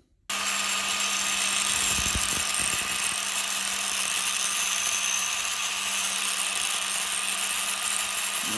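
Electric angle grinder starting abruptly and running steadily while grinding down the small aluminum pin set in the shim, to finish it flush.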